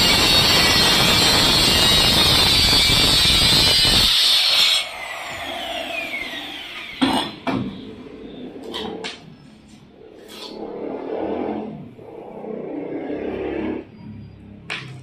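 Handheld electric marble cutter cutting marble with a loud, steady grinding noise for about five seconds, then switched off, its whine falling as the blade spins down. After that come a few sharp clacks and some scraping as the cut marble pieces are handled.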